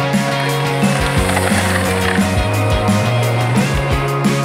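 Background music with a steady beat and a held bass line, with a rolling, rattling noise mixed in under it.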